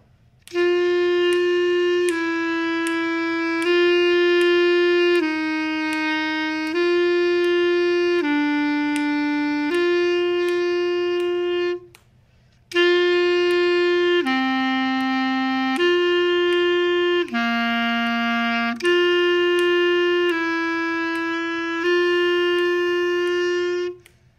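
A clarinet plays a slow exercise in sustained notes. The first phrase is G, F sharp, G, F, G, E, G. After a short breath about halfway through, the second phrase is G, D, G, C, G, F sharp, G, and it ends on a held G under a fermata. Each phrase keeps coming back to G between neighbouring and lower notes.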